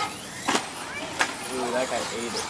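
Electric radio-controlled short-course trucks running on a dirt track, with two sharp knocks about half a second and a second in, and people talking faintly in the background.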